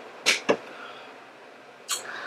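Drinking from a plastic water bottle: two brief soft noises close together near the start, then faint room tone and a short intake of breath near the end.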